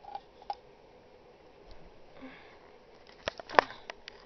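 Handling noise from plush toys moved against the recording device: soft rustling, then two sharp clicks a fraction of a second apart near the end, the second one the loudest.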